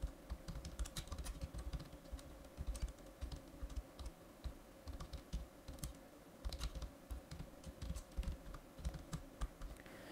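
Computer keyboard typing: quiet, irregular runs of key clicks with short pauses between them.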